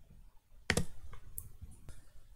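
A few sharp clicks of a computer mouse button while working in the software: a louder double click about two-thirds of a second in, then a couple of fainter single clicks.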